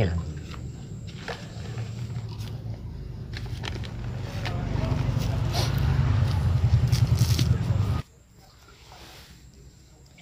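Soil and a plastic polybag crackling and scraping as hands pack earth around a planted tree stump, over a steady low rumble that grows louder and then cuts off abruptly about eight seconds in.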